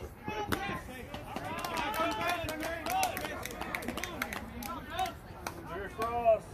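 Several people's voices calling and chattering over one another, no words clear, with scattered sharp clicks.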